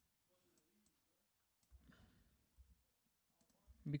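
Near silence with a few faint, scattered computer clicks from editing code.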